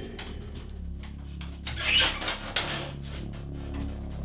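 A run of short, irregular scraping strokes, loudest about two seconds in, over faint steady low tones.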